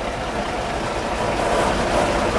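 HŽ series 7122 diesel railcar standing with its engine idling: a steady low rumble with a faint steady whine above it.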